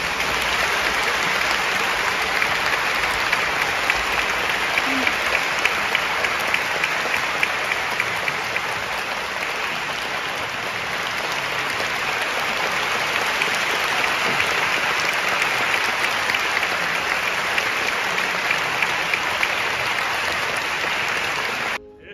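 Audience applauding steadily throughout; the applause stops suddenly near the end.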